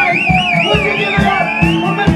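Live rock band: a high electric guitar lead line wavers in a wide, fast vibrato, then glides upward, over a steady drum beat and bass.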